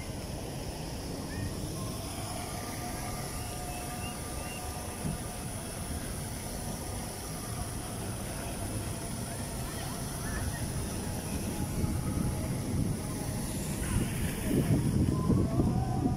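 Riding a bicycle over brick paving: a low, steady rush of wind on the microphone mixed with tyre rolling noise, turning louder and gusty near the end.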